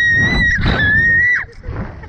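A Slingshot rider's long, high-pitched scream, held on one pitch with a brief break about half a second in, then dropping off in pitch about a second and a half in. Wind rumbles on the ride-mounted microphone underneath.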